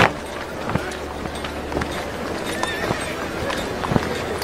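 Horses' hooves clopping irregularly on stone paving, with crowd voices in the background.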